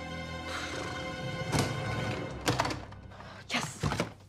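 Background music from a short film, with a few thuds over it in the second half.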